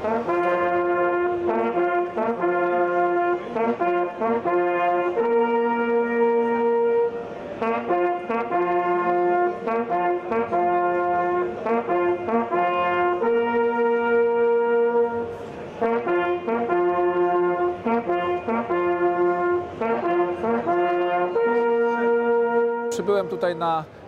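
A brass fanfare of short and long held notes, in the manner of hunting horn signals, played until just before the end.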